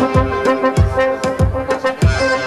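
Electro swing band playing live: a trombone holds a series of notes over a steady kick-drum beat, about one beat every 0.6 seconds.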